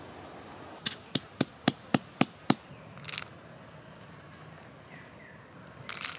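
Food being prepared by hand: a quick, even run of seven sharp knocks, about four a second, then a short scattered rattle. Near the end, peanuts drop into a coconut-shell bowl.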